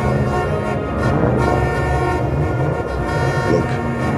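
Horns of several Cadillac sedans sounding together in one long, steady chord over a low rumble.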